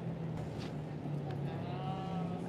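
A low, steady hum of city street background noise. Near the end, a woman starts a soft hummed 'mm'.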